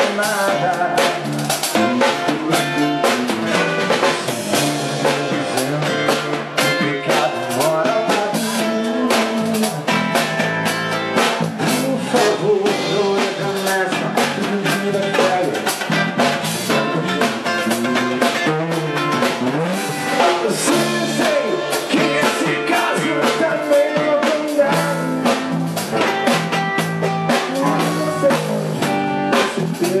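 Live rock band playing a song: a man singing over guitars, bass guitar and a drum kit keeping a steady beat.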